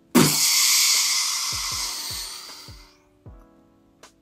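A long hiss made with the mouth, imitating a life vest inflating when its pull handle is yanked. It starts suddenly and fades out over about three seconds.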